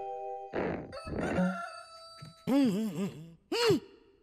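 Rooster crowing cock-a-doodle-doo, a run of rising-and-falling notes starting about two and a half seconds in, with a last long note just before the end. It is preceded by the tail of the music and a couple of short whooshes.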